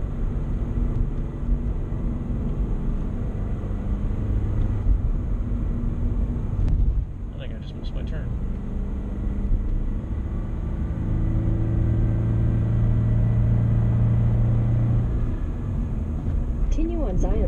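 Car engine and road noise heard from inside the cabin while driving, a continuous low drone. The engine note drops briefly about seven seconds in, then settles into a steadier, louder hum from about eleven seconds until shortly before the end.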